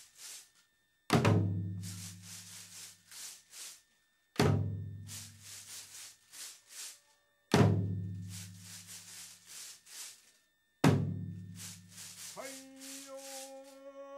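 A waist-worn drum (koshi tsuzumi) of a dengaku sasara dance struck four times, about one deep beat every three seconds, each followed by a run of dry clacks from sasara wooden slat rattles. Near the end a long held tone rises slightly.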